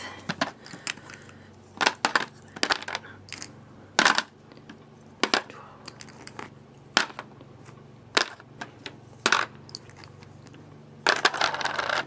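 Small plastic eyeshadow jars being set down one at a time in a clear plastic tray, each giving a sharp click at irregular intervals of about a second. A busier clatter of jars being shuffled comes near the end.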